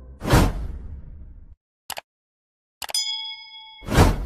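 Sound-effect transition: a swelling whoosh hit a moment in that fades and cuts off at about a second and a half, then a short click. Near the end a mouse-click sound leads into a bright notification-style ding that rings for about a second with several clear tones, and a second whoosh swells into a hit at the very end.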